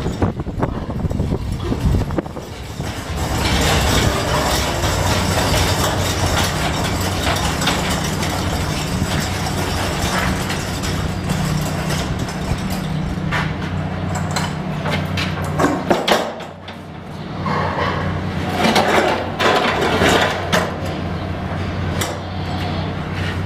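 Metal hand cart rolling and a hog carcass being dragged along a concrete barn floor: a long steady rumbling scrape, with a steady low hum underneath. Near the end the scrape gives way to a run of knocks and rattles as the cart is handled.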